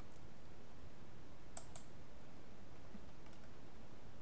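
Two quick computer mouse clicks in a row, a double-click, about a second and a half in, then one fainter click later, over a steady background hiss.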